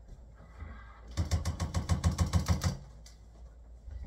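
A rapid, even run of mechanical clicks, about ten a second, that starts about a second in and lasts about a second and a half.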